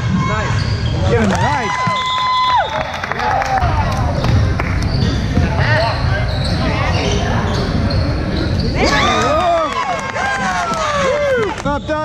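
Basketball dribbling and sneakers squeaking on a hardwood gym floor, with many short squeals clustered near the end. A steady tone is held for about a second and a half early in the possession, over voices echoing in the large hall.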